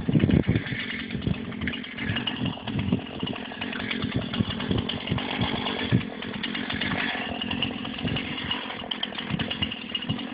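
Husqvarna 240 two-stroke chainsaw running, louder in the first second and then steadier.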